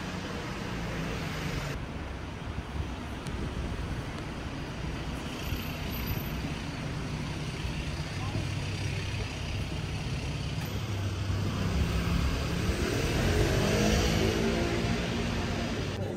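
City street traffic noise: cars going by in a steady hum, with people's voices joining in and growing more prominent in the latter part.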